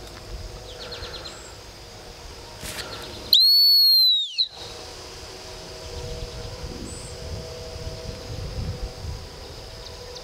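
One long blast on a dog-training whistle, lasting about a second, dipping slightly in pitch as it ends: the whistle signal to a retriever sitting at a distance, given just before a hand cast.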